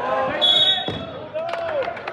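Spectators shouting in a gym, with one short, steady blast of a referee's whistle about half a second in, and a few thuds on the mat.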